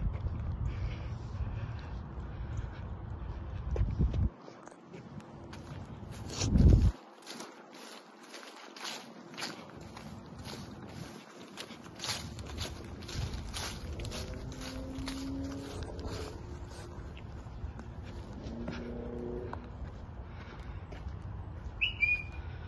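Footsteps crunching through dry grass and fallen leaves, about two steps a second, after a loud thump about seven seconds in. A low rumble on the phone's microphone runs through the first four seconds.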